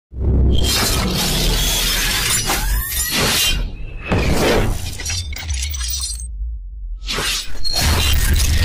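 Cinematic intro sound effects over music: a run of shattering, crashing hits and sweeping whooshes on a deep bass rumble. The sound thins out briefly about six seconds in, then a new crash hits near the end.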